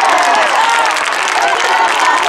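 Group of supporters cheering a won point: several voices shouting together over hand clapping, the clapping growing denser towards the end.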